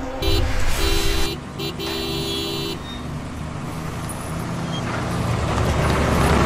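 A car horn honks four times in the first three seconds, the last blast the longest. A vehicle's engine and tyre rumble follows, growing louder as it approaches.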